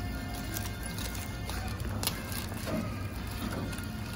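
Background music, with aluminium foil crinkling and crackling in a few sharp clicks as it is peeled open from a roasted sweet potato.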